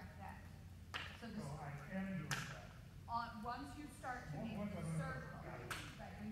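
Indistinct voices talking over a steady low hum, with a few sharp clicks.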